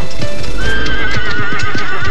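A spooked horse whinnying: one long quavering call that starts about half a second in, over repeated hoofbeats. Music plays underneath.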